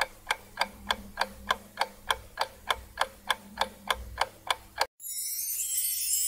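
Clock-ticking countdown sound effect, even ticks about three a second, stopping short about five seconds in; a steady high hiss follows.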